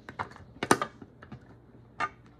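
Small plastic toy figures and pieces clicking and tapping as they are handled and set down on a hard tabletop: a cluster of light taps in the first second and a half, the sharpest about three-quarters of a second in.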